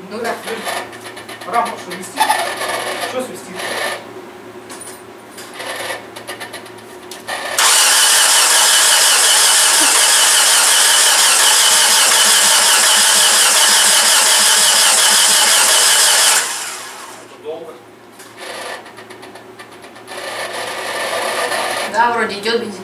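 Starter motor cranking the freshly installed engine of a Mitsubishi Chariot for about nine seconds, loud and steady, without the engine firing, then stopping suddenly. The engine does not catch because it has no spark. Quieter clicks and knocks of handling under the bonnet come before and after.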